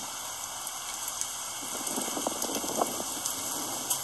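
Hail and rain falling steadily on wet paving: a constant hiss with scattered sharp ticks of hailstones striking.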